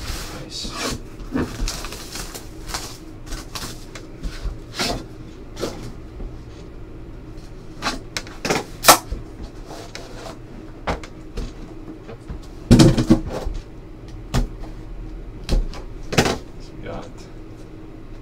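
Hands handling trading card boxes on a tabletop: a series of knocks, taps and clicks as boxes are set down, opened and lids lifted, with a louder cluster of thumps about thirteen seconds in.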